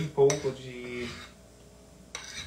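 A spoon clinks once against a ceramic bowl right at the start while a wet poolish of flour and water is mixed, followed by a brief drawn-out voice.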